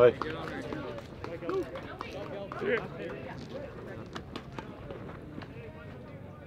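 Spectators at a baseball game talking and calling out, with a loud shout and a laugh right at the start. A few faint sharp clicks are scattered through the chatter.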